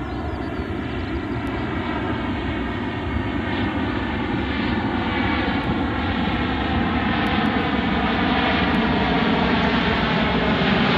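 A large four-engine jet transport aircraft flying low overhead, its engines roaring and whining. The sound grows steadily louder as the plane approaches, and the whine slowly falls in pitch.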